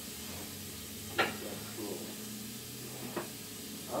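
Steady hiss with a low hum, broken by a light click about a second in and a softer knock near the end, as a jar and utensils are handled on a kitchen counter.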